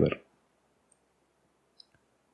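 A single short, sharp click near the end, a computer mouse button being pressed, after a faint tick about a second in; otherwise quiet room tone.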